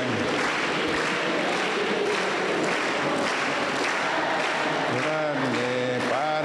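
A congregation applauding: a dense, steady clatter of many hands clapping. Near the end a man's chanting voice comes back in over it.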